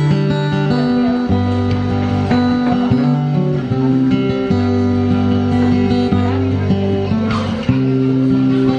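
Tanglewood acoustic guitar playing a slow instrumental passage between sung verses, over steady held low notes and chords that change about every one to one and a half seconds.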